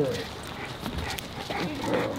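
A Cane Corso giving short whines that slide in pitch, once at the start and again near the end, with indistinct voices behind.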